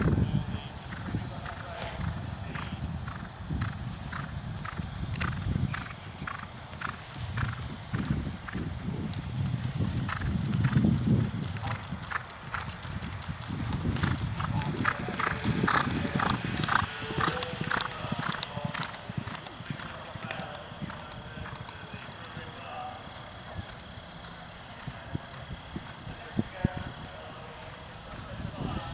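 Horse galloping on turf, with a steady rhythm of hoofbeats. They are loudest and quickest just after it clears a log cross-country fence about halfway through, then fade as it gallops away.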